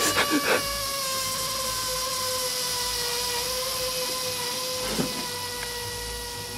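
Air escaping from a knife-punctured inflatable pool float: a steady whistle over a hiss, its pitch dropping slightly.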